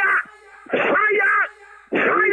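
A voice praying loudly and fervently in short, raised bursts with brief pauses between, heard over a narrow-band telephone conference line.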